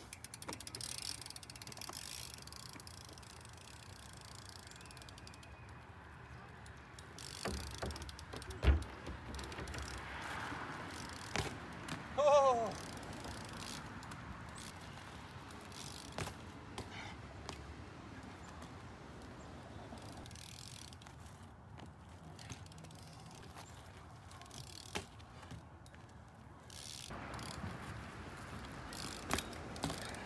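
BMX bike rolling on an asphalt driveway, its tyres on the rough pavement with scattered clicks and knocks. A heavy thump of the bike coming down on the pavement about nine seconds in is the loudest sound, followed a few seconds later by a short falling pitched squeak.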